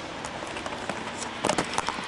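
Steady rain patter with scattered sharp clicks and taps, a short cluster of them about one and a half seconds in.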